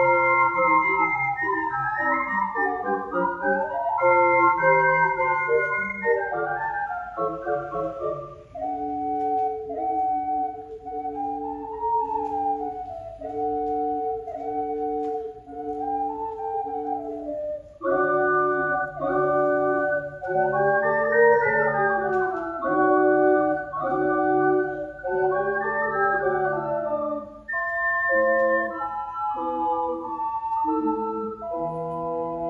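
Ocarina septet, seven ocarinas from soprano down to contrabass, playing sustained chords with moving lines. About eight seconds in the texture thins to a quieter passage of a few held voices under a slow rising-and-falling melody, and about eighteen seconds in the fuller ensemble returns with short repeated chords.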